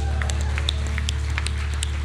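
Worship band holding out a sustained low chord after the singing stops: a steady deep bass note under fainter held tones, with a few faint scattered ticks over it.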